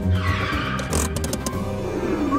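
A Lamborghini Huracán pulling in, with a loud tyre-squeal-like swish in the first second and a few sharp clicks about a second in, over background music with a steady low beat.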